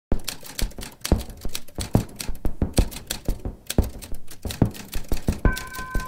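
Typewriter keys striking in a quick, uneven run as a title is typed out letter by letter. Near the end a steady high two-note tone sounds under the key strikes.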